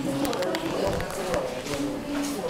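Indistinct voices of people nearby talking, with a few light clicks in the first second and a half.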